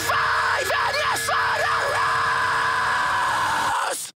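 Metalcore song playing, with harsh screamed vocals over a thin backing with little bass. It cuts out suddenly near the end.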